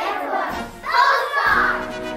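A group of young children singing or calling out together over a recorded backing track, loudest about a second in.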